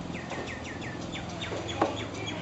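A small bird chirping: a quick run of about six short falling chirps in the first second, then a few scattered calls, with a brief louder sound near the end.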